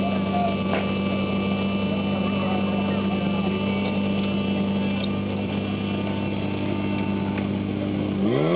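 Portable fire-pump engine idling steadily while the team couples hoses to it, a constant hum.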